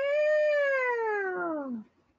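A single long meow, falling steadily in pitch and stopping after nearly two seconds.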